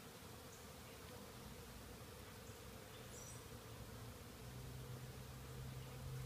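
Faint, steady buzzing of honeybees around an open hive, growing a little louder near the end.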